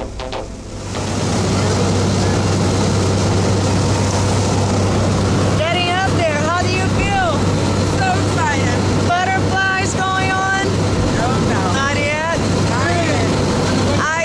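Jump plane's engine and cabin noise heard from inside the cabin in flight: a loud, steady drone with a strong low hum, coming in about a second in. People's voices are heard over it from about six seconds in.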